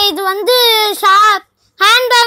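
A child's high voice singing a short phrase in held notes. It stops about a second and a half in and starts again just before the end.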